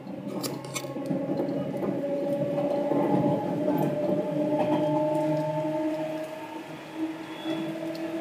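Seibu 2000 series electric train running, its motor whine climbing slightly in pitch as the level builds over the first few seconds, then holding steady before easing off near the end. A few sharp clicks sound about half a second in.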